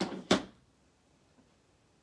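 Two quick hard-plastic clacks about a third of a second apart, the second a sharp knock and the loudest, as a clear acrylic stamp block is handled off the ink pad before stamping.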